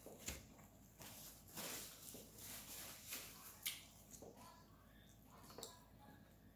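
Faint sounds of eating a seafood boil: soft chewing and hands picking at sauced crab legs, with a few light clicks.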